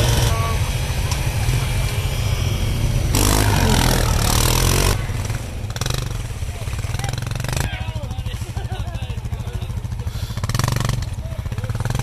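ATV engine revving under load as the quad ploughs through deep snow, the revs climbing and dropping about three to five seconds in, then labouring on unevenly.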